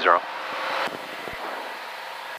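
Steady in-flight cabin noise of a Columbia 350, its engine, propeller and airflow heard as an even rushing hiss with little bass.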